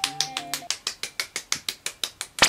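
Quick, even hand clapping, about eight claps a second.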